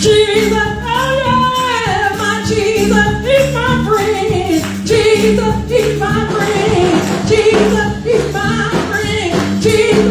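A woman singing a gospel song into a microphone over live drums and keyboard.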